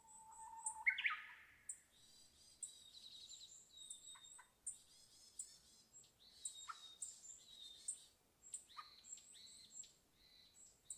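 Small birds chirping and twittering in short, high, rapid notes throughout, with one louder call about a second in that holds a low note and then rises sharply in pitch.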